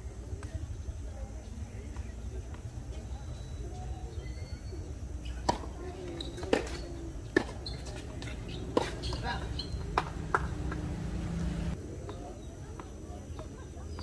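Tennis ball struck by rackets and bouncing on a hard court in a rally: six sharp pops, irregularly spaced about a second apart, starting about five seconds in.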